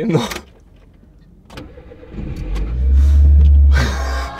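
A car engine starting, then running with a loud, steady low rumble from about halfway in, under two men laughing.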